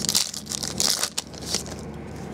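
Foil trading-card pack wrapper crinkling as it is torn open and pulled off a stack of cards. A quick run of crackles lasts about a second and a half, then it goes quieter.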